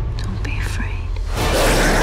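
A woman whispering a short line over a low rumbling drone, then a loud harsh noise bursting in about one and a half seconds in.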